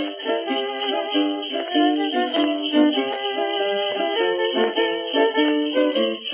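Vintage holiday music from a 78 rpm record: an instrumental passage of short, quick notes, in the thin, narrow sound of an early recording.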